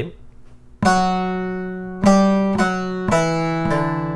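Bağlama (Turkish long-necked saz) being played slowly: about five plucked strokes, the first about a second in, each left to ring and fade before the next.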